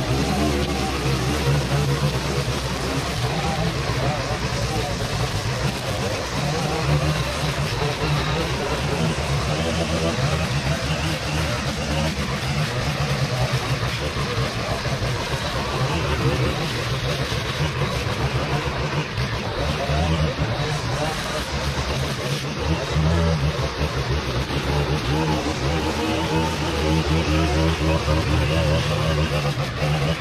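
Two gas string trimmers running steadily together, their engines held at speed as they cut through grass and weeds.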